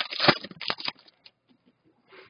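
Glossy 2016-17 O-Pee-Chee Platinum hockey cards being flipped through by hand: a quick run of sharp flicks and rustles of card against card in the first second, then only faint handling.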